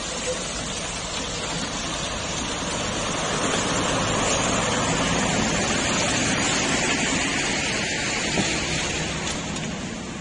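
Traffic on a rain-wet road: a steady hiss of tyres on water over a low engine hum, swelling toward the middle and easing off near the end.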